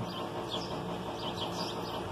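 A few faint bird chirps over steady background noise.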